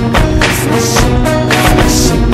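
Background music: a song with a steady drum beat, about four beats a second.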